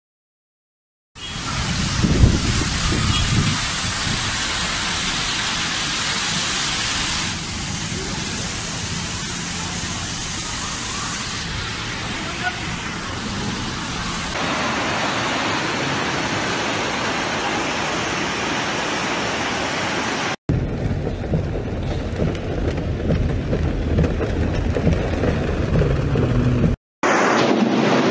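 Loud, steady rush of floodwater pouring down a street, starting about a second in, in several phone-recorded clips that change abruptly at each cut.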